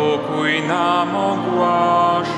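A slow church hymn being sung, with long held notes.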